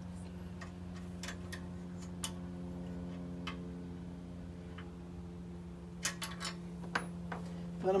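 Scattered light metal clicks of a wrench against the rocker arm adjuster and lock nut of a small single-cylinder engine as the valve lash is set, with a cluster of them about six seconds in. A steady low hum runs underneath.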